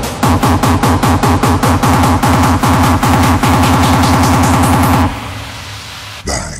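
Hardstyle electronic dance music: a kick-drum pattern that speeds up into a fast roll as a build-up. About five seconds in, the kicks cut out and leave a quieter noise wash.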